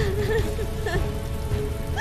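Heavy rain pouring down steadily, with mournful music carrying a wavering melody line over it.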